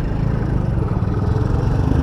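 A vehicle's engine running steadily at low revs while the vehicle moves slowly.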